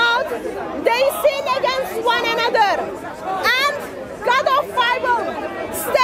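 Speech: a woman talking without a break.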